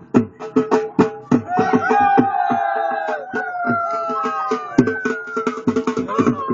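Live folk music: a drum beaten in a quick steady rhythm, joined from about a second and a half in by a long held melodic line whose notes slide slowly down, fading near five seconds.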